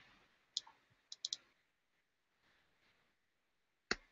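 A few short, sharp clicks at a computer against faint room tone: one click, then a quick run of three, then a single louder click near the end.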